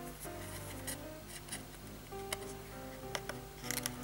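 Quiet background music with held notes, over small clicks and scratches of a metal pick working limescale out of the jet holes of a plastic dishwasher spray arm; the clicks come more often in the second half.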